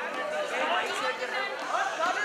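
Several people chattering at once in a large hall, no words clear.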